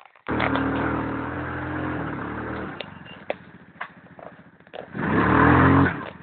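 ATV engine revving hard for about two and a half seconds, then dropping back to a lower, rougher run with scattered clicks and knocks. Near the end it revs up again sharply, its pitch rising.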